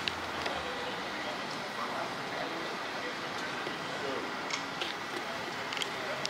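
Steady outdoor background noise with faint, distant voices and a few light clicks.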